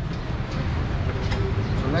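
Busy street background: a steady low rumble of traffic with faint voices.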